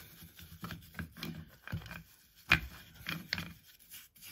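A bristle paintbrush wet with petrol-and-acetone cleaner scrubbing inside the bore of a Fiat Grande Punto throttle body, around the held-open butterfly. It makes irregular short scratchy strokes, with one sharper stroke about two and a half seconds in. The scrubbing is dissolving oily dirt from the bore.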